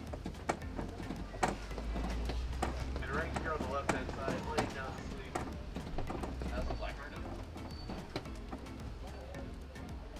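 Safari ride truck running along a rough track: a steady low rumble with frequent sharp knocks and rattles as it bumps along.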